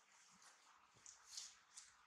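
Near silence: quiet room tone with a few faint, short high-pitched sounds about a second in.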